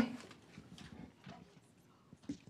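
A sharp knock at the start, then light, irregular footsteps on a hard floor and stage, fading out, with faint murmuring in the room.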